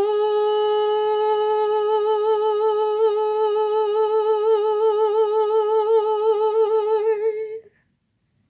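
A woman's unaccompanied singing voice holding one long note, with a vibrato that grows wider from about two seconds in, before stopping sharply near the end.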